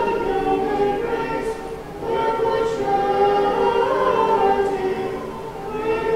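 Orthodox church choir singing a cappella in sustained chords, the phrases breaking off briefly about two seconds in and again near the end.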